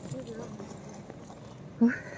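Roller-skate wheels rolling and clattering over the joints of the promenade's paving tiles as a skater passes. A short burst of voice comes near the end.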